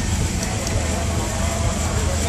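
Steady low rumble of showground background noise at a steam fair, with faint distant voices.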